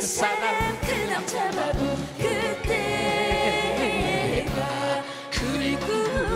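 A Korean adult-contemporary pop (seongin gayo) duet sung live by a woman and a man over a backing band with a steady drum beat. The sung notes waver with vibrato.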